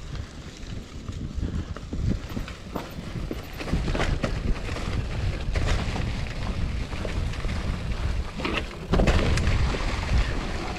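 Mountain bike riding down a dry-leaf-covered dirt trail: tyres rolling through fallen leaves and over dirt and roots, wind buffeting the camera microphone, and frequent knocks and rattles from the bike. It grows louder about four seconds in, with a louder stretch near the end.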